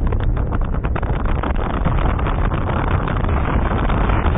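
Wind buffeting a phone's microphone while filming on the move down a ski slope: a loud, steady rumble, with a few sharp crackles in the first second.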